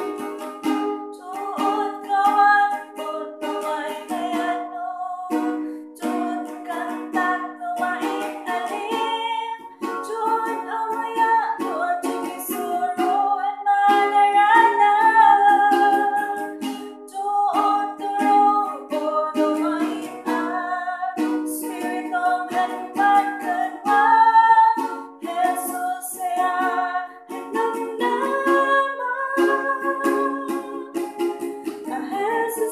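A woman singing an Igorot gospel song, accompanying herself with strummed chords on a ukulele.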